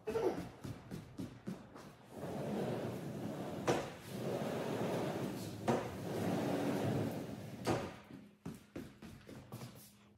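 Panels of a large multi-panel sliding glass patio door rolling along their track, three runs of a couple of seconds each, each ending in a knock as a panel meets its stop. A few light clicks and knocks come at the start and near the end.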